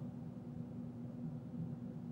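Quiet room tone: a faint steady low hum over soft background hiss.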